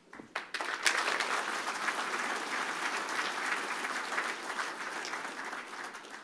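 Audience applauding: a few scattered claps, then full, steady applause from about a second in that begins to fade near the end.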